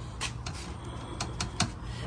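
A few light, sharp clicks and taps, spaced irregularly, from a hand on a scooter's carbon-fiber tank cover, over a low steady background hum.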